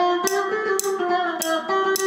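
Electric bağlama (saz) played solo with a plectrum, picking a melody with sharp, bright strokes about twice a second and notes ringing between them.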